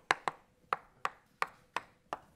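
Chalk tapped against a blackboard to make dots, six sharp taps at irregular spacing, about three a second.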